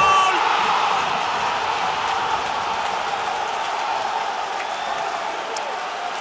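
Ice hockey arena crowd cheering after a goal, a steady wash of many voices that slowly dies down.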